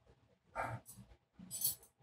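A man sipping a blood orange mimosa from a wine glass close to a microphone: a few short, soft mouth sounds as he drinks and tastes it. The last one is a brief hiss.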